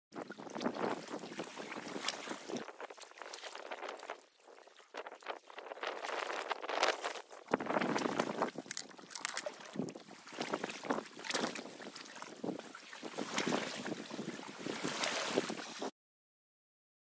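Wind buffeting the microphone in gusts, with scattered sharp crackles throughout and a brief lull about four seconds in.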